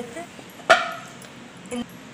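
A dog barking: one loud bark a little under a second in, and a shorter, quieter one near the end.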